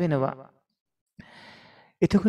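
A single exhaled breath, a sigh, beginning a little over a second in and fading within about three quarters of a second.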